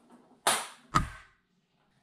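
A ping pong ball struck with a club, with two sharp clicks about half a second apart: the strike, then the ball's hard landing.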